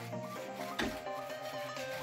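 Background music with a stepped melody over the rubbing of a small paint roller spreading blue coating on a tiled floor, with a short louder scrape just under a second in.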